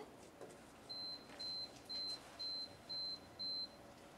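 Six short, high electronic beeps at an even pace, about two a second, one pitch throughout, over faint room tone.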